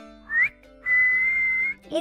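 A person's wolf whistle: a short upward whistle, then a long held note.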